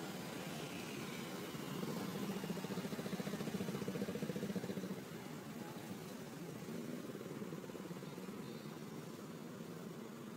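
Low, steady hum of an engine running nearby, growing louder for a few seconds about two seconds in, then easing off again.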